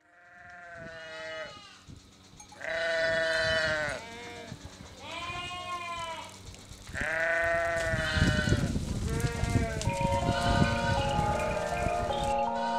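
A flock of sheep bleating: about five or six long, wavering bleats follow one another, some overlapping. Near the end, chime-like music notes come in.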